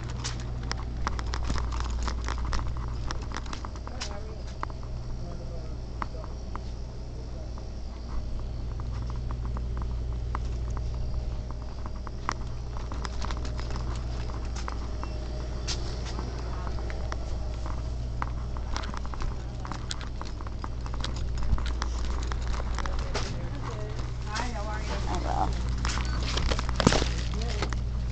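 Shop interior ambience: a steady low hum with scattered clicks and knocks, and quiet voices that are clearest near the end.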